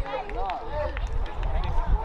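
Players' voices calling and shouting across the football ground in short rising-and-falling calls, over a low rumble.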